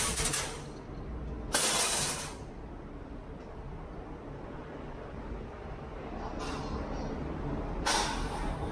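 Steady low rumble of a docked harbour ferry's engines, with short bursts of loud hiss. The loudest hiss comes about a second and a half in, and another near the end.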